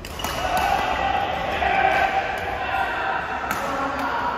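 Badminton rally: sharp racket strikes on the shuttlecock, one just after the start and another near the end, with sustained high-pitched squeaking from court shoes in between, echoing in a large hall.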